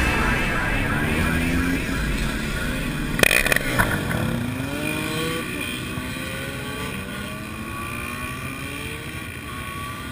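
A group of motorcycles passing one after another, their engine notes rising and falling in pitch as each goes by. A brief clatter sounds about three seconds in, and the sound fades gradually toward the end.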